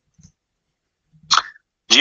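Near silence broken by one short, sharp breath noise into a microphone about a second and a half in, just before a man starts speaking.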